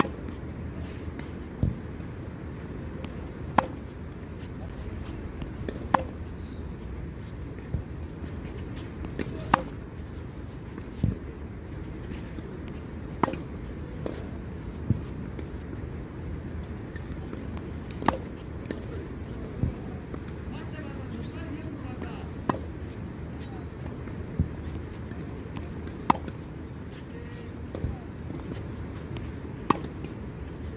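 Tennis ball struck by a racket in a rally of one-handed backhand strokes: a sharp pock about every three to four seconds, with fainter knocks in between, over a steady low rumble.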